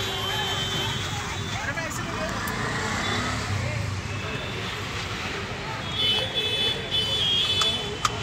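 Busy street ambience: indistinct chatter from a crowd of people, with traffic noise underneath. It gets a little louder near the end.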